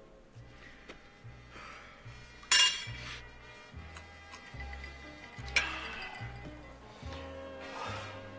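A drinking glass clinking twice, sharply about a third of the way in and again a little past the middle, as it is lifted and drunk from, over soft background music.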